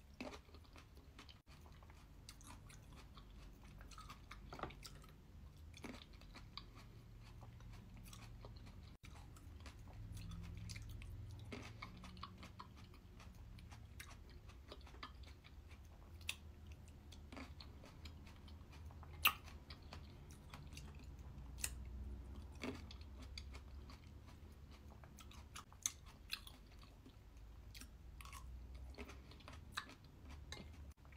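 A person chewing mouthfuls of crisp, sweet red grapes in a thick, high-protein creamy dessert, with soft crunches and occasional short sharp clicks every few seconds.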